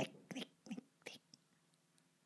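A voice sniggering in a whisper: a few short, breathy bursts, each fainter than the last, dying away about a second and a half in.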